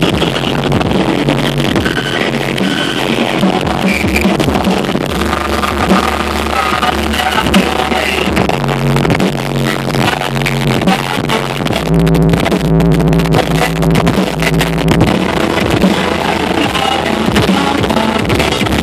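Loud music with deep, heavy bass notes held for a second or two at a time, played through a car audio demo system's subwoofers and speakers.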